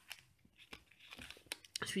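Plastic blister pack of washi tape rolls being handled: a scatter of small clicks and crinkles, quickening towards the end.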